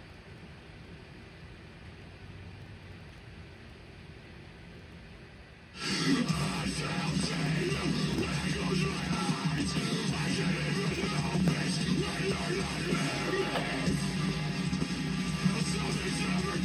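About six seconds of quiet room tone, then a heavy rock song with electric guitars starts suddenly and plays on loudly.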